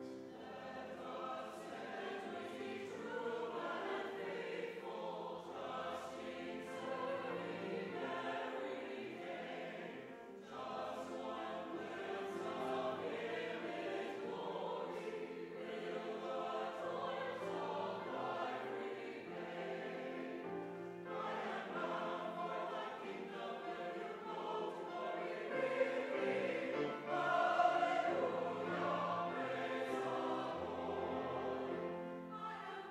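Church choir singing, a brief breath between phrases about ten seconds in, growing loudest near the end.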